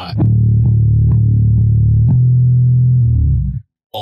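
Electric bass (Fender Precision Bass in drop B tuning) picking a run of repeated notes at the third fret, about two notes a second, ending on the fifth fret. The notes stop sharply just before the end.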